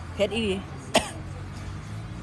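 A woman coughs once, sharply, about a second in, just after a short spoken word. She is eating noodles loaded with a whole packet of ground chili, and the cough comes from the chili burning her throat.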